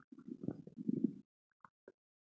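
Bloated stomach and intestines gurgling after eating Mentos, picked up close by an earphone microphone laid on the belly. A run of low, bubbling gurgles fills the first second or so, then two short, higher squeaks come near the end.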